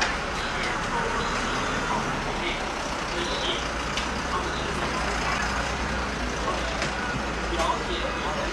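A large truck driving slowly past with a steady low engine rumble, under scattered voices.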